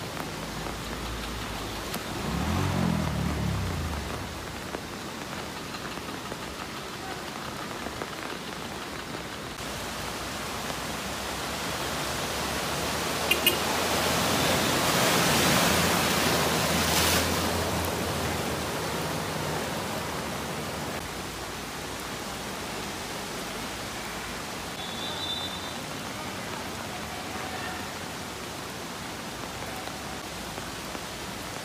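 Steady rushing of floodwater and rain. A motorbike engine revs briefly about two seconds in. Around the middle a vehicle ploughs through deep flood water, and a surge of splashing water swells up and fades over several seconds.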